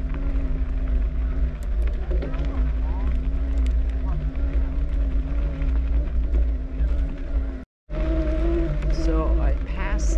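Wind buffeting the action camera's microphone while riding an electric mountain bike uphill on a dirt trail, over a steady hum. The sound cuts out briefly near the end, and when it comes back the hum is higher in pitch.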